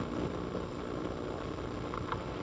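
Steady low room hum with a light hiss, with no clear events.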